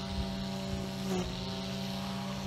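A steady engine hum running evenly, with a low rumble beneath it.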